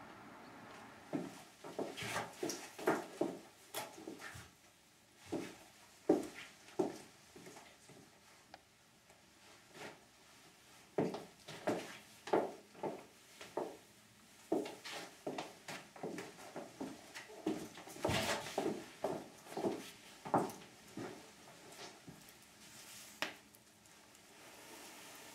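A series of irregular soft knocks, clicks and rustles in clusters with short pauses, like handling and movement close by in a small room.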